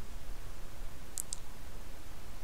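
Two short, faint clicks close together about a second in, over the steady low hum of the recording's background noise.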